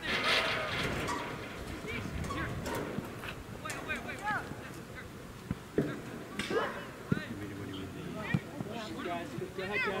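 Shouts and calls of young players and spectators across a soccer field, short raised voices coming again and again, louder in the first second. A few sharp knocks come in the second half, the ball being kicked.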